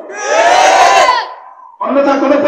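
A man's voice holding one long, raised, sung-out call, its pitch rising and then falling. It fades away about a second and a half in, and speech starts again just before the end.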